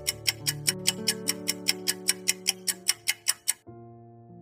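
Quiz countdown timer ticking rapidly and evenly like a clock over soft sustained background music; the ticking stops shortly before the end as the timer runs out, leaving the music.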